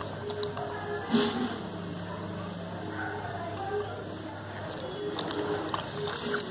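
A small SOBO WP-850F submersible aquarium filter pump running under water, a low steady hum, with faint music in the background.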